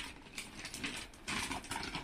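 Metallic gold gift-wrapping paper crinkling and rustling as a present is unwrapped by hand, a quick run of small crackles that grows louder about halfway through.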